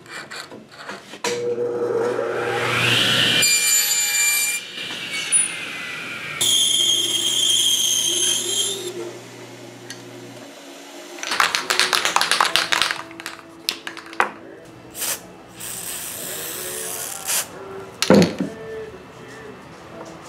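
Power saws cutting a wooden blank: a table saw motor starts up with a rising whine and runs steadily for several seconds while cutting, then shorter rasping saw cuts follow, with a sharp knock near the end.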